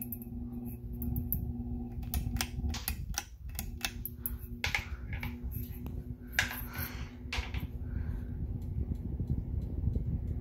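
Hampton Bay Littleton ceiling fan running, its motor humming steadily, with irregular sharp clicks and ticks over the hum. The hum briefly drops out about three seconds in.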